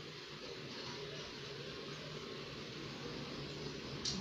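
Quiet room tone: a steady faint hiss with a low hum underneath and no distinct sound event.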